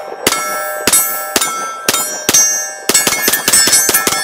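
A Sig P320 pistol with a Grayguns competition trigger firing a string of shots, each followed by steel targets ringing. The shots come about half a second apart at first, then in a quick run of rapid shots near the end.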